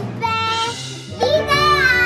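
A little girl's long, high-pitched excited cry, falling in pitch at the end, over background music.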